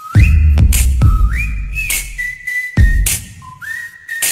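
Intro music: a whistled melody of a few held notes, gliding up between them, over an electronic beat with deep bass and sharp snare-like hits.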